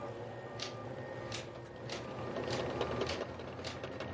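Faint rallycross car engine running at low speed after the race, with a steady low hum and light ticks roughly every half second.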